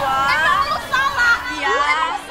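Women's raised voices shouting in a heated argument.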